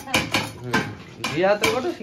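Glass bangles clicking against each other and the plastic bucket as a hand works wet food in it: a quick run of sharp clicks, with a short wordless voice rising and falling in the second half.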